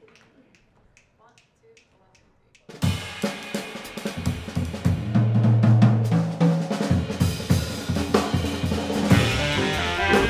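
After a near-quiet start, a jazz band comes in suddenly about three seconds in, with the drum kit leading on snare, bass drum, hi-hat and cymbals over double bass and piano. The baritone and alto saxophones join near the end.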